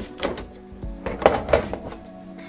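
Sheet-metal top cover of an HP ProLiant DL360p Gen8 server being unlatched and slid off the chassis. There is a short metallic rattle about a quarter second in, then a louder scrape and clatter of the lid about a second and a half in.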